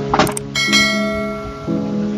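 A subscribe-button animation's sound effects over acoustic guitar music: quick clicks with a short swish, then a bright bell ding about half a second in that rings out for about a second.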